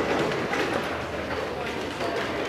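Puppies playing together: a steady scuffle of movement and play noise.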